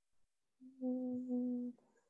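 A woman's voice humming briefly, two short hums on one steady pitch running together for about a second.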